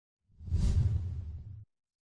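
Whoosh sound effect with a deep rumble under it for a logo reveal. It swells quickly, tapers off, and cuts off suddenly about a second and a half in.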